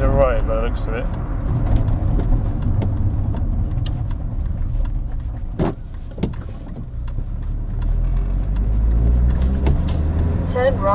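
Car cabin road and engine noise: a steady low rumble that quietens as the car slows for a junction about halfway through and builds again as it pulls away. Faint scattered clicks run throughout, with two sharper knocks around the middle.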